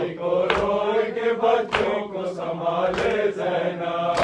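A man chanting an Urdu noha (mourning elegy) in long, held melodic lines, over sharp slaps at an even pace, about one every 1.2 seconds, three in all: the beat of matam, mourners striking their chests in time with the recitation.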